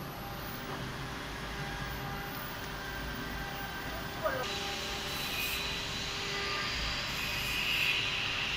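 Steady hum of a three-spindle CNC router at rest during tool calibration, several even tones under a noise haze. About four seconds in there is a brief knock, and a high hiss joins and continues.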